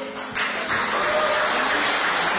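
Audience applauding, rising to a steady clatter about half a second in.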